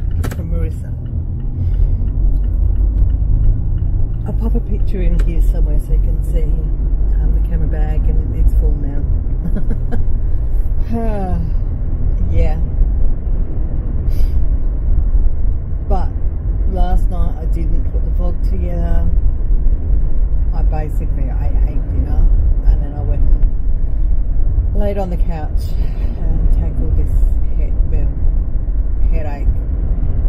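Steady low road and engine rumble inside a moving car's cabin, with a woman's voice talking over it at intervals.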